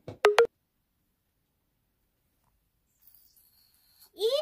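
A girl's short, loud 'eww!' at the very start, then near silence with a faint hiss in the last second.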